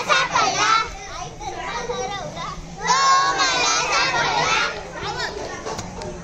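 A group of girls shouting and calling out over one another during an outdoor playground game. The calls are loudest at the start and again about halfway through, with a quieter stretch of chatter between.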